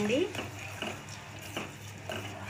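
A ladle scraping and knocking against the inside of a steel pot a few times as a herb paste is stirred in hot oil, with a light sizzle of frying underneath.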